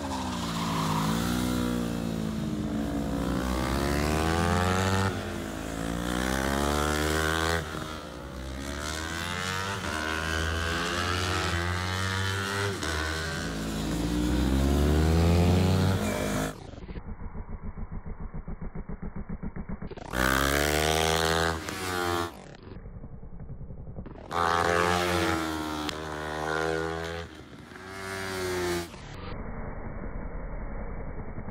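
Motorcycle engines on track, revving up and down again and again as the bikes accelerate and back off through the corners. Around the middle comes a quieter stretch of even, rapid engine pulsing before the revving resumes in short clips.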